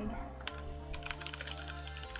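Typing on a computer keyboard: a quick run of key clicks, over quiet steady background music.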